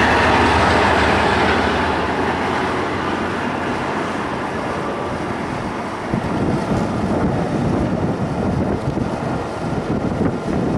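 Amtrak Pacific Surfliner diesel passenger train running past on the tracks: a loud, steady rush of wheel and rail noise. From about six seconds in, a heavier, uneven low rumble comes in.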